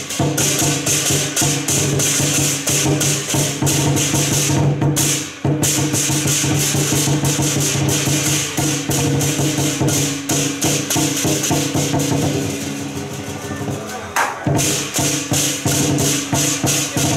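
Lion-dance percussion: a large barrel drum beaten at a fast, even pace with clashing hand cymbals. There is a short break about five seconds in and a softer passage before the beat comes back strongly near the end.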